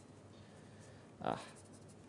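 Faint scratching of writing on a sheet of paper.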